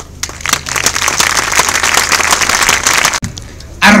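Outdoor audience applauding: scattered claps at first that quickly fill into dense applause, stopping abruptly about three seconds in.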